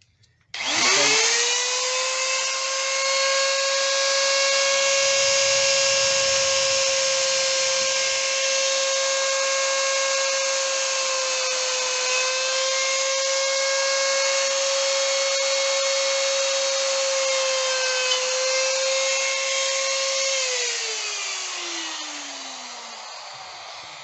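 Electric die grinder with a cone-shaped bit spinning up to a steady high whine while it bores a guide hole into a sculpture. The pitch dips briefly under load twice, then the tool is switched off and winds down with a falling whine near the end.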